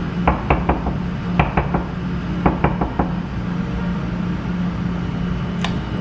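Knuckles knocking on an apartment door: three quick runs of three or four knocks in the first three seconds.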